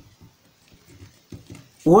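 Pen writing on paper: faint, irregular scratches, followed near the end by a man's voice starting to speak.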